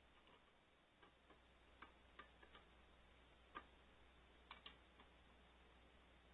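Faint, irregular clicks and taps, about ten scattered over a few seconds, over a low steady hum.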